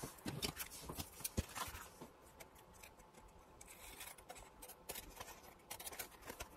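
Scissors snipping through thin tea-bag paper, a scattering of quiet, crisp cuts with light paper rustling as the sheet is handled, busiest in the first two seconds and again near the end.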